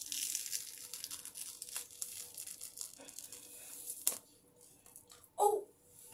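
Peel-off face mask being peeled from the skin around the eye, making a faint, crackly tearing sound for about four seconds and ending with a small click.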